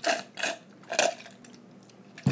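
A person sipping a drink through a straw from a glass: three short sucking sounds about half a second apart.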